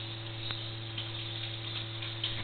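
A steady low electrical-sounding hum with a couple of faint clicks over it.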